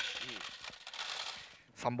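Metal pachislot medals jingling and clattering together, a dense run of fine clinks that fades away after about a second and a half.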